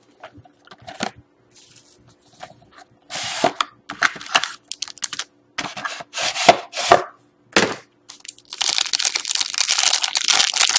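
A cardboard trading-card box being opened, with a few short scrapes and rubs of the lid and inner tray. About eight and a half seconds in, a foil card pack starts crinkling steadily as it is handled and torn open.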